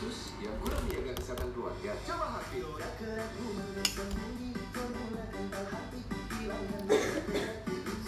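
Television sound: background music with voices speaking over it.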